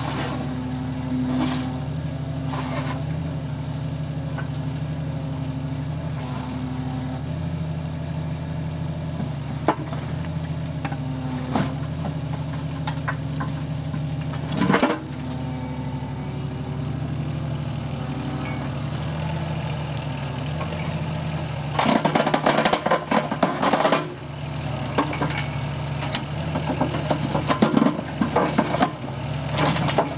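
A 360° excavator's diesel engine running steadily, with a Baughans bucket crusher working off its hammer circuit. Scattered knocks, then a dense run of rattling and knocking about two-thirds of the way in and again near the end, as concrete and rubble are crushed in the bucket.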